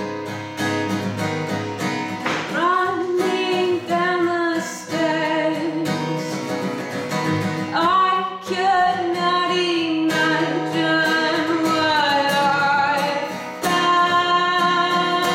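A woman singing a song, accompanying herself on a strummed acoustic guitar; the voice comes in about two seconds in and goes on in phrases over the steady strumming.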